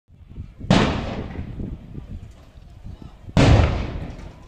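Two loud bangs of tear gas rounds going off, about two and a half seconds apart, each echoing and fading over about a second.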